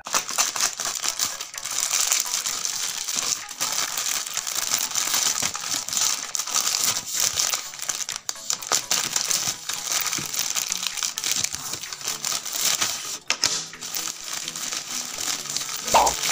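Wallet packaging crinkling and rustling continuously as it is unwrapped by hand, with many small irregular crackles.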